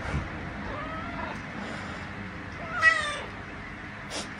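Young domestic cat meowing twice, a soft call about a second in and a louder one near three seconds: the cat protesting, unhappy that its owner has moved away during a cuddle.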